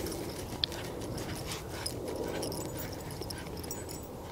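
Two huskies digging in grassy turf: repeated scratching and scuffing of paws and snouts in the soil.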